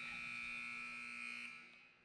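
Gymnasium scoreboard buzzer sounding the end of the game: one steady, high buzzing tone that fades out about a second and a half in.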